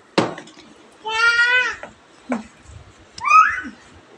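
A small child's high-pitched calls: one held, slightly falling call about a second in, then a shorter rising cry near the end, the child shouting because he wants to be taken out too. A sharp knock comes just at the start.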